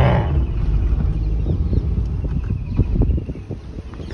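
A car's engine and road noise heard from inside the cabin as it moves slowly: a steady low rumble with scattered soft knocks and rattles, easing off near the end.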